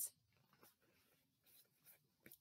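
Near silence, with a few faint rustles of paper picture cards being handled.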